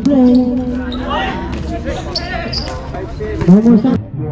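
A basketball bouncing on a hard outdoor court, several sharp bounces through the middle of the clip, under players' shouting voices; a loud shout comes near the end.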